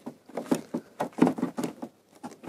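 CCS2 charging connector being pushed into a car's charging inlet: a run of plastic clicks and knocks as the plug is worked into place.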